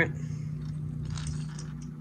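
Black-gloved hands turning a plastic crankbait lure close to the microphone, faint rubbing handling noise, over a steady low hum.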